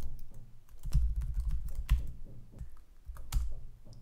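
Typing on a computer keyboard: irregular keystrokes with short pauses between runs, and a louder key press a little after three seconds in.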